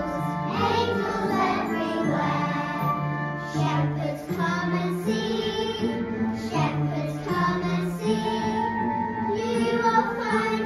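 Young children singing a song together as a group over an instrumental accompaniment with steady held bass notes.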